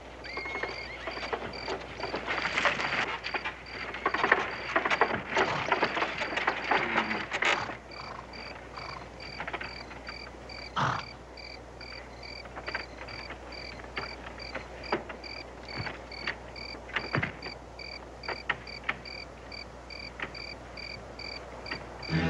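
Crickets chirping steadily in a night ambience, short evenly spaced chirps at about two to three a second. For the first seven seconds or so a dense crackling, rustling noise lies over them, and a few sharp clicks or knocks come later.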